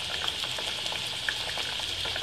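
Hot oil sizzling and bubbling steadily around wheat-flour dough patties deep-frying, with faint scattered crackles.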